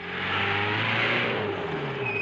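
A jeep's engine running as it drives up, growing louder over the first second and then holding steady.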